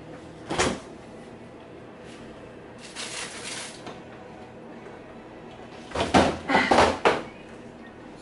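Off-camera household knocks and bangs: one sharp knock about half a second in, a softer rustle around three seconds, then a quick run of louder bangs and clatter about six to seven seconds in.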